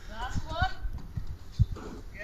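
Several short dull thuds of a ball and feet on a concrete yard, the loudest about one and a half seconds in, with a brief high-pitched voice near the start.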